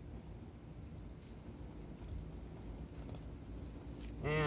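Faint low outdoor rumble with a few light clicks of hands handling a foam RC plane, the clearest about three seconds in.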